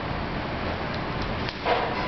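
Steady background hiss with a short scrape of a metal scraper against a marble slab near the end, as hot sugar is worked and lifted off the stone.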